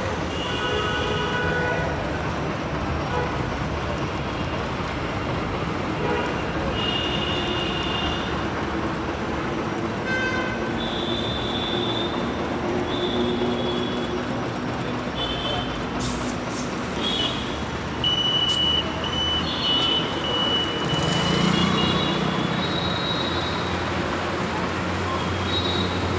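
Busy road traffic running steadily, with repeated short vehicle horn toots, more frequent in the second half.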